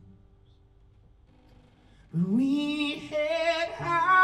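A male singer's voice in a live song: a near-quiet pause with faint notes dying away, then about two seconds in he comes in with a long, wavering sung note, moving to a second held note near the end.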